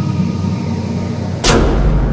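Intro music with held tones, cut about one and a half seconds in by a single loud cinematic impact hit with a short whoosh, which leaves a deep low rumble under the music as the logo appears.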